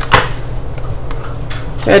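A single sharp knock just after the start, then faint handling ticks over a low steady hum, as tomato sauce is poured from a plastic container into a pan.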